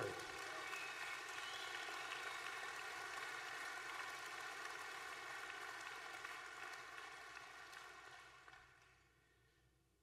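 Audience applauding, steady at first, then dying away over the last two seconds to silence.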